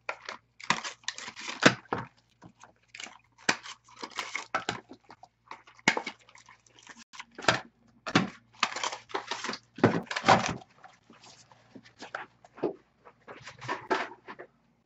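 Foil wrappers of baseball card packs crinkling and tearing as the packs are ripped open and handled, in short irregular bursts.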